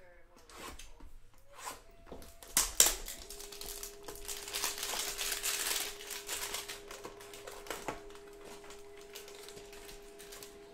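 A cardboard Donruss basketball hanger box being torn open by hand: scattered clicks and a sharp snap about three seconds in, then a couple of seconds of crinkling and tearing as the plastic wrapper comes off the stack of cards.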